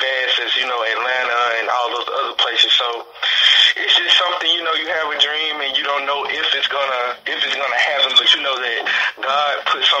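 Speech only: a man talking steadily, with brief pauses about three and seven seconds in.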